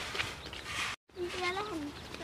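Children's voices calling out in drawn-out, high-pitched tones over a steady outdoor hiss, broken by a sudden split-second dropout about halfway through.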